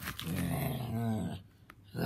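A low, drawn-out voiced sound lasting over a second, its pitch bending down at the end. A second, louder one starts right at the end.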